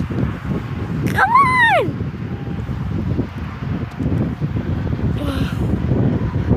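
Wind buffeting a phone microphone outdoors, with handling noise throughout. About a second in comes one high call that rises and falls over most of a second.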